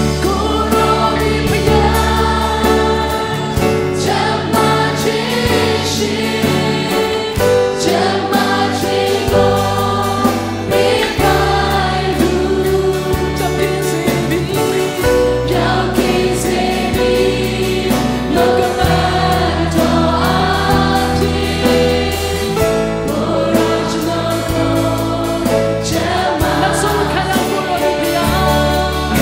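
A worship team and congregation singing a Burmese-language gospel praise song together, accompanied by keyboard and acoustic guitar over a sustained low bass line.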